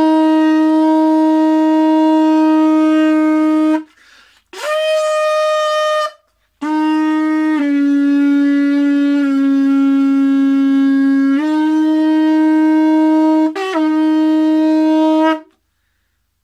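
Conch shell horn (dungkar) blown in three long, very loud blasts. The first is a steady low note and the second is shorter and higher. The longest comes last: its pitch steps down twice and then back up, with a brief break near the end.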